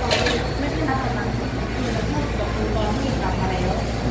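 Coin-operated front-loading washing machine in its spin cycle, a steady low hum.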